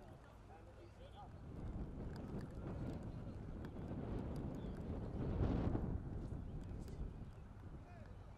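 Wind rumbling on the camera microphone, swelling into a stronger gust a little past the middle, with faint shouts of footballers in the background.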